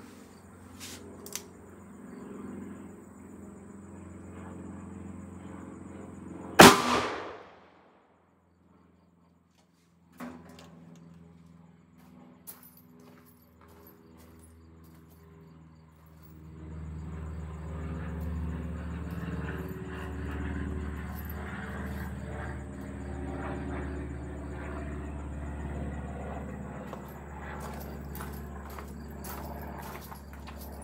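A single .357 Magnum shot from a Rossi RP63 revolver with a three-inch barrel, about six and a half seconds in: a sharp, very loud report with a short ringing tail. From about halfway through, a steady low rumble with scattered clicks and knocks.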